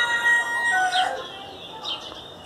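A rooster crowing, the long call ending about a second in, followed by a few short, high bird chirps.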